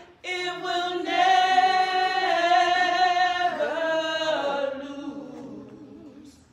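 Slow unaccompanied singing in long held notes with a slight waver. There is a short break just after the start. The last phrase slides down in pitch and fades away about five seconds in.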